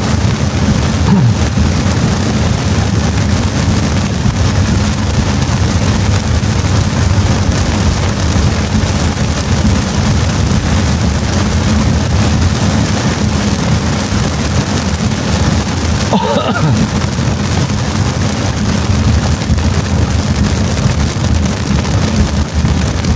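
Heavy rain on a car's windshield and roof, heard inside the cabin over the steady rumble of tyres on the wet road while driving. A brief laugh comes about three-quarters of the way through.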